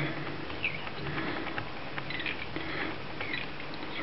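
Faint rustling and small scratchy ticks of fly-tying thread and synthetic fibre being handled at the hook in the vise, over a steady low background hiss.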